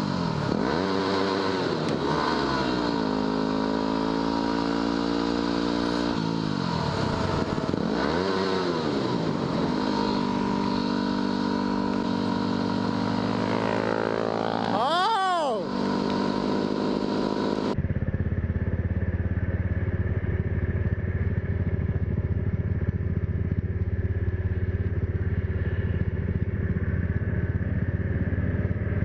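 Yamaha WR250R's single-cylinder engine heard from the rider's helmet while riding, the revs rising and falling through the gears, with a sharp drop and steep rise about halfway. About two-thirds through, the sound cuts abruptly to a duller recording dominated by a steady low rumble.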